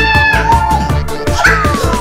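Upbeat background music with a steady beat. A high held squealing note stops about half a second in, and a whistle-like tone starts gliding steadily down in pitch near the end.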